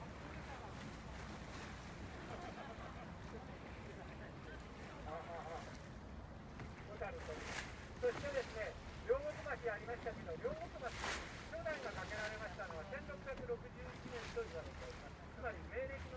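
Steady low rumble of a boat running on a river, heard from aboard, with water and wind noise. People's voices talk over it from about five seconds in.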